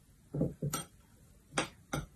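A metal spoon clinking and scraping against a small ceramic bowl while stirring a crumbly walnut and sugar filling: about four short taps, two in the first second and two near the end.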